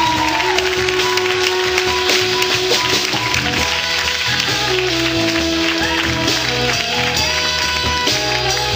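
Live band music: a man sings long held notes with some sliding pitches over accordion, guitar and a steady bass line.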